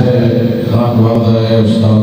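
A man's voice chanting a recitation into a microphone, on long held notes that bend and break briefly.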